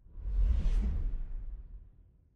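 Whoosh sound effect with a deep low rumble under it, used as a title-card transition. It swells quickly, brightest just under a second in, then fades away over the next second.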